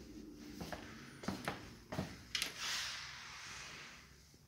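Footsteps and handling knocks from a handheld phone carried through rooms: a handful of irregular thumps and clicks in the first half, then a short hiss.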